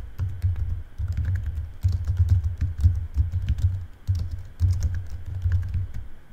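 Typing on a computer keyboard: three or four quick runs of keys clicking and thudding, one word at a time, with short pauses between them.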